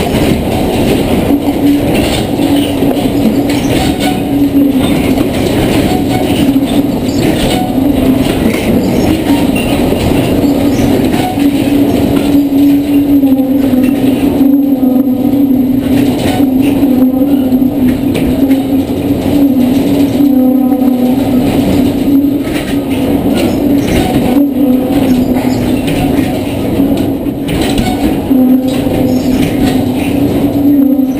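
Loud continuous rumble with a low wavering hum and rattling from a large servo-hydraulic shake table driving a full-scale test building through recorded earthquake ground motion from the 2002 magnitude 7.9 Denali earthquake.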